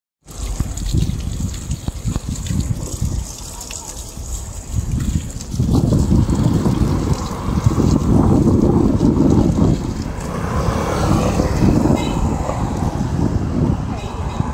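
Water from a whale-sculpture fountain splashing into its stone basin. About five seconds in, a louder, gusty low rumble sets in over it.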